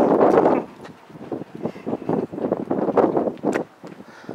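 Wind buffeting the camera microphone in uneven gusts, loudest in the first half-second.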